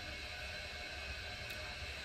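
Water running in the background: a faint, steady hiss with a low hum beneath it.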